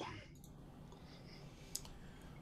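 A quiet pause with faint steady hiss and a single sharp click about three-quarters of the way through.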